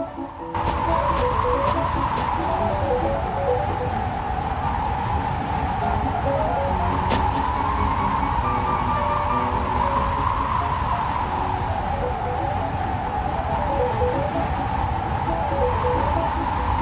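Strong wind blowing in surging gusts, starting suddenly about half a second in, over a music score with a repeating run of notes.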